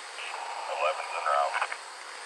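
A muffled voice speaking briefly over a police radio.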